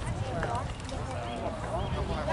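Indistinct voices of players and spectators calling out across a ballfield, over a low steady rumble.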